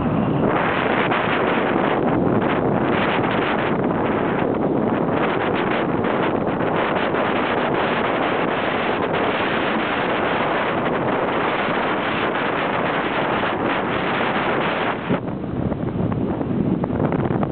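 Wind rushing over the microphone from a car driving along at speed, mixed with steady road noise; no horn or whistle is heard. The rush eases a little near the end.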